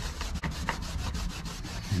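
A cloth rag scrubbed back and forth over the Fox body Mustang's bare steel floor pan, wiping metal prep onto the surface rust: a quick run of rubbing strokes.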